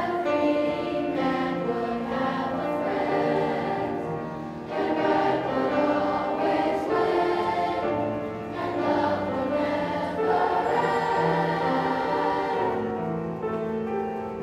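Children's choir of sixth graders singing a holiday song, the voices holding long notes.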